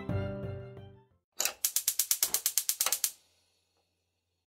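Background music fades out over the first second, then a rapid run of about fifteen sharp mechanical clicks, like a winding ratchet, lasts under two seconds: an edited-in transition sound effect.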